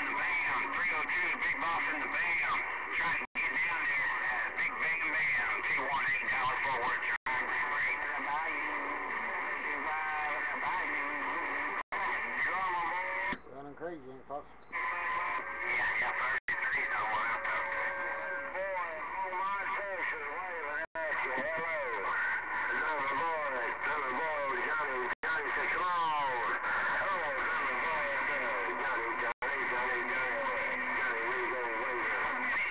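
CB radio receiver audio: garbled, overlapping voices of distant stations coming through band noise, too distorted to make out words. There is a short lull about halfway through.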